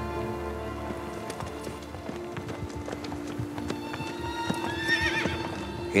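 Horses' hooves clip-clopping as cavalry moves across the ground, with a horse whinnying about five seconds in, over a background music score of sustained tones.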